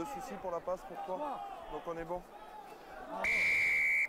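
Rugby referee's whistle blown in one long steady blast from about three seconds in, cut off suddenly at the end, as he signals the try awarded. Before it, men's voices on the pitch.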